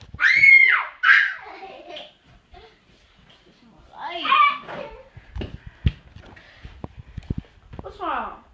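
A young child's high-pitched squeals with rising and falling pitch in the first second or so, and another vocal outburst around four seconds in. These are followed by a run of short, sharp knocks and taps.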